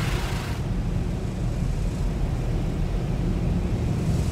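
Steady low rumble of tunnel car wash machinery heard from inside the car's cabin, with a hiss of rinse water spraying on the car that fades out about half a second in.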